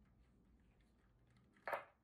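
Near silence with faint scattered ticks, broken near the end by one short, sharp noise lasting about a fifth of a second.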